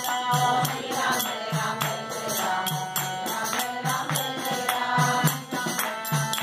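A group chanting a devotional mantra together in unison, kept in time by a steady beat of hand claps and light percussion.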